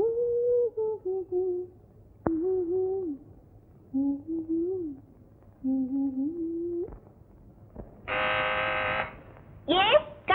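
A woman humming a slow tune in short phrases. Near the end a loud, steady buzz-like tone sounds for about a second, followed by two quick upward-gliding vocal sounds.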